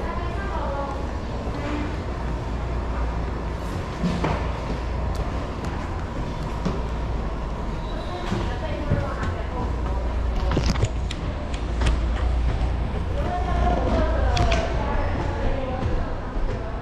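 Indistinct voices in the background over a steady low rumble, with scattered sharp knocks and clicks.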